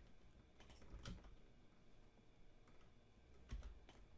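Near silence with a few faint, scattered clicks from a computer keyboard and mouse as the software is operated.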